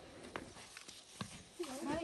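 A few sharp, spaced-out clops of a pony's hooves on stone paving as it shifts its feet, with a voice near the end.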